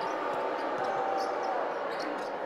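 Basketball being dribbled on a hardwood court under steady arena crowd noise, with a short steady tone about a second in.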